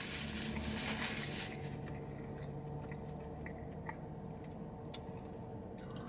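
A person chewing a mouthful of tortilla wrap, faint mouth sounds with a few small clicks, over a steady low hum.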